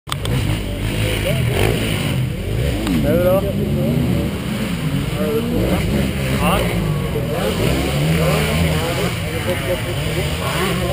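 Motocross motorcycle engines running, with the revs rising and falling several times over a steady low engine note.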